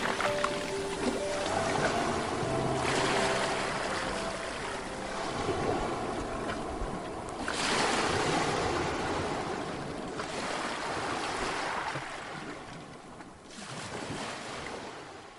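Ocean surf washing onto a sandy beach. It swells and recedes in surges every few seconds. Soft music notes sound in the first few seconds and then fade out.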